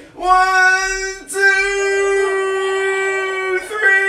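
A child's voice holding a long, steady, high note, broken off briefly about a second in and again near the end, as the child strains to tense every muscle at once and hold it.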